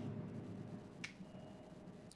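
A single short, sharp click about a second in, over faint room noise.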